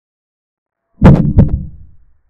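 Two short wooden knocks of a chess program's piece-move sound effect, about half a second apart, the first a little louder, each dying away quickly.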